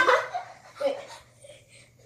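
Boys laughing: a loud burst right at the start and a shorter one just under a second in, dying away toward the end.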